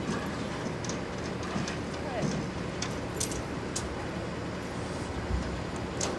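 Outdoor street ambience: a steady low hum of an idling vehicle with faint voices in the background, and a few short light clicks about three seconds in.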